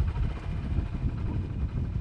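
Wind buffeting the microphone outdoors: a loud, uneven low rumble with no engine note.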